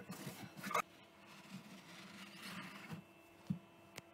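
Faint, irregular scrubbing and rubbing on the rubber door seal of a washing machine drum, with a single sharp click about three and a half seconds in.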